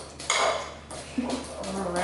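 Kitchen utensil clatter: a fork clinking against a small glass bowl as eggs are beaten, with a knife chopping scallions on a cutting board. One sharp, ringing clink comes early on, then lighter tapping.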